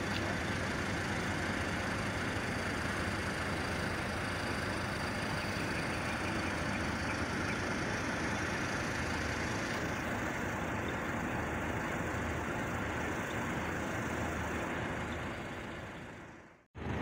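Steady outdoor background noise with a low vehicle-engine hum, as picked up by a smartphone's built-in microphone while filming. It fades out near the end.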